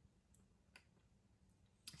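Near silence: room tone with two faint clicks.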